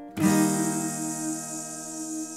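Acoustic guitar chord strummed once just after the start and left ringing, slowly fading.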